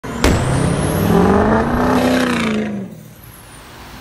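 Intro sound effect: a sharp hit, then a pitched, engine-like tone that rises and falls under a rising hiss, fading out about three seconds in.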